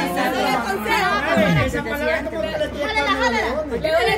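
Overlapping chatter of a group of people talking at once, several voices over one another.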